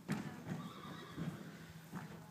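A horse whinnying, a held call of about a second starting half a second in, over a few dull thuds that fit hoofbeats on arena sand.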